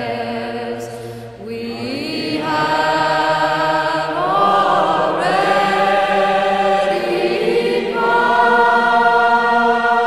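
A choir singing slow, sustained chords, the voices sliding into new held notes about a second and a half in, around four seconds and again around eight seconds.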